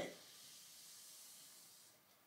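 Near silence: a faint steady hiss of room tone that drops away just before the end.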